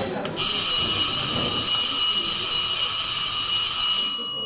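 The music cuts off, and a moment later a loud, steady high-pitched electronic tone with several overtones starts abruptly and holds at one pitch.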